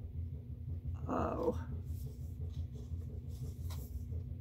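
A dog makes one short, rough vocal sound about a second in, over a steady low hum.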